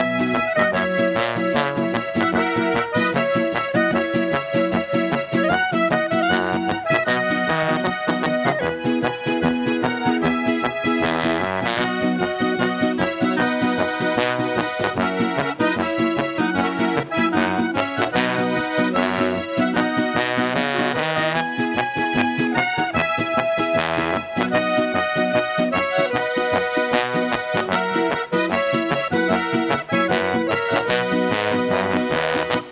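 Live Austrian folk band playing an instrumental number with a steady beat: clarinet and button accordion lead, with electric guitar and trombone.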